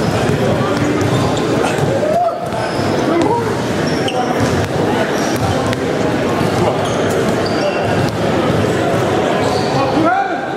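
Basketballs bouncing on a hardwood gym floor during dribbling drills, with many overlapping voices chattering in the large, echoing hall.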